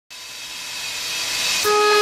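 Intro music opening with a rising whoosh swell that grows louder for about a second and a half. Sustained melodic notes enter near the end.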